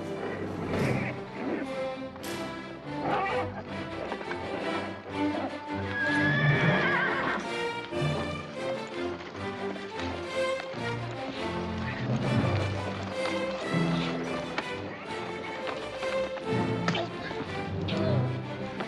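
Orchestral film score playing under a horse neighing and whinnying, with hooves clattering, as a wild horse is roped and broken in a corral. The loudest whinny wavers up and down about six seconds in.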